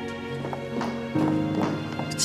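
High-heeled shoes clicking on a hard floor as a woman walks, about two steps a second, over background music with long held notes.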